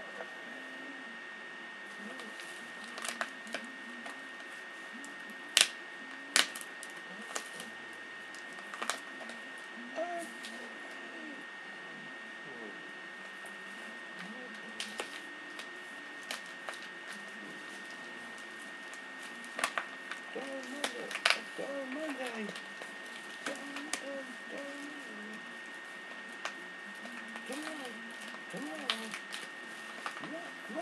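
A person's voice murmuring faintly, broken by scattered sharp clicks and knocks of handling, the loudest about six seconds in and again about twenty-one seconds in, over a steady high-pitched whine.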